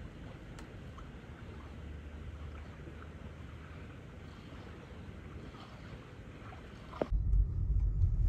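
Faint steady outdoor background hiss with a few light ticks, then about seven seconds in a sudden switch to the louder low rumble of a car driving, heard from inside the cabin.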